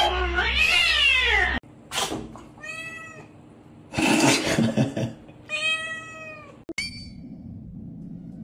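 A cat hisses and yowls in a harsh, noisy squall. After a sudden cut, a Siamese cat meows loudly several times: two drawn-out meows, a rougher cry between them, and a short one near the end.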